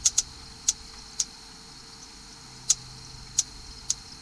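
Sharp snapping clicks of high-voltage spark from an MSD 6AL ignition box and its coil arcing across a spark tester's gap, about seven at irregular intervals as the trigger contact is made and broken: the box is putting out a strong spark.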